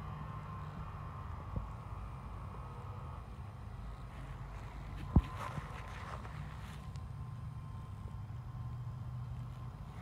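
A steady low engine hum in the background, with a sharp click about five seconds in and a fainter one earlier.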